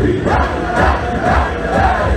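Hasidic wedding dance music: many men's voices singing loudly together with the band, over a steady pulsing bass beat.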